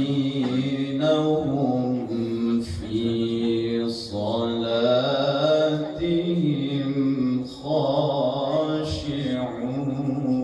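Male qari reciting the Quran in melodic tilawah style into a microphone: long, ornamented held notes that rise and fall in pitch, with brief pauses about four seconds in and again past seven seconds.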